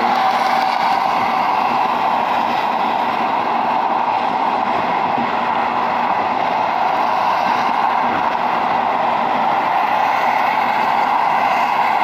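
Steady road and wind noise of a car travelling at freeway speed, heard from inside the car.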